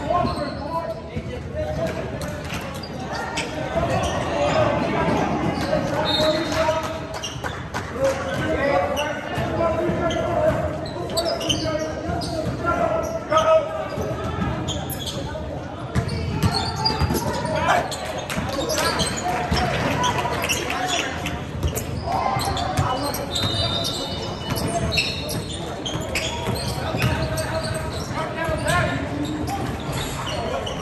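A basketball bouncing on a hardwood gym floor during play, with repeated sharp knocks that echo in a large hall, over background voices of players and spectators.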